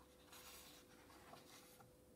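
Faint rustle of a paper book page being turned and smoothed flat by hand, over a faint steady hum.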